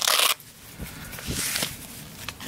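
The fabric case of a folding solar panel being handled and flipped open by hand. There is a short, loud burst of rustling noise at the start, then quieter rustling and a few light knocks.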